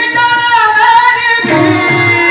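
A male singer's voice through a microphone and loudspeakers, holding one long sung note of a devotional song, then stepping to a new note about one and a half seconds in.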